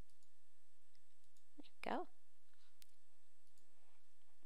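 A few faint computer mouse clicks over a steady low hiss, with one brief voiced sound about two seconds in.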